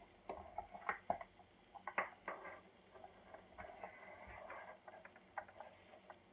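Faint scattered clicks and rustling of hands unwinding a twist tie from a small electric griddle's power cord, the cord shifting on the countertop.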